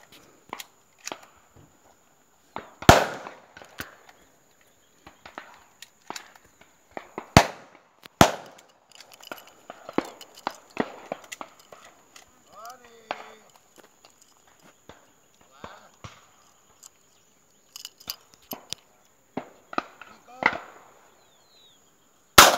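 Shotgun shots during a dove shoot: a loud report about three seconds in, then two sharper ones around seven and eight seconds, with scattered faint knocks between.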